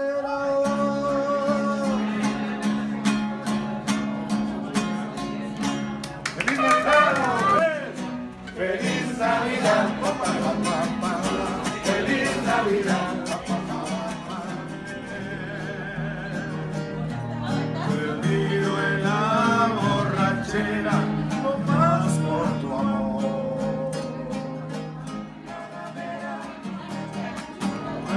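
Two men singing a song together in harmony while strumming nylon-string acoustic guitars.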